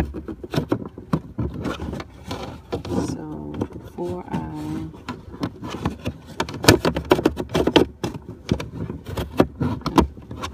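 Repeated plastic clicks and knocks from the glove box door of a 2010 Lexus IS250 being refitted by hand, mixed with fingers rubbing on the phone's microphone.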